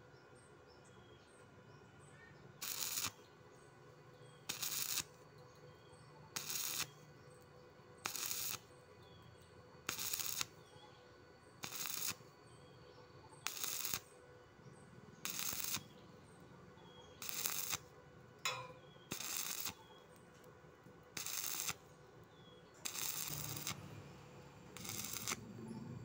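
Stick (arc) welding on thin steel with a coated electrode, the arc crackling in short bursts of about half a second, one roughly every two seconds, about a dozen times. The arc is struck and broken over and over, a start-stop method used to weld thin steel without burning through.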